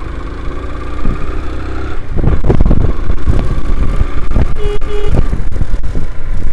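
Motorcycle engine running while riding a dirt track, heard from on the bike. The sound turns louder and rougher about two seconds in, and two short beeps come near the end.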